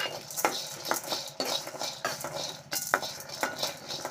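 A metal ladle stirring and scraping dry beans and split dal around a dry aluminium kadai. The grains rattle against the pan, with irregular sharp clicks where the ladle knocks the metal.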